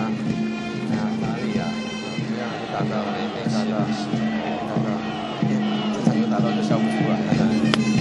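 Baseball stadium crowd noise with cheering-section music from the stands, a steady low drone running under chanting and horn-like tones. A single sharp click comes near the end.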